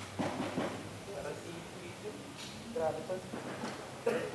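Quiet voices talking in a large room, with a few soft knocks and clatter from music equipment being handled.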